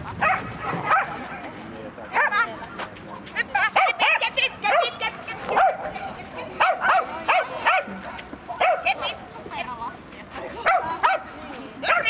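A dog barking in many short barks at an irregular pace.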